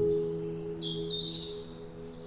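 Soft instrumental background music: a plucked chord struck at the start rings and dies away. A couple of high, falling bird-like chirps sound about half a second to a second in.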